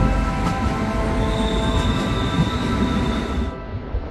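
Commuter electric train running on a curve, with a high wheel squeal for about a second in the middle over the rumble of the wheels. The train sound drops away suddenly near the end.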